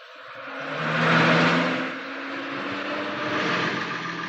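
Lorry engine running as the loaded truck drives in and pulls up, its noise swelling to a peak about a second in, then settling to a steadier engine note.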